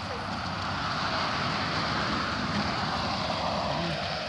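A car passing on the road, its tyre and road noise swelling to a peak midway and then fading away.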